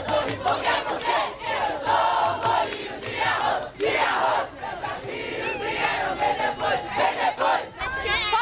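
A crowd of teenagers shouting together, many voices overlapping in a loud, continuous din that swells and dips.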